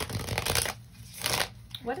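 An oracle card deck being shuffled in two bursts of card noise, the first longer, the second shorter about a second later.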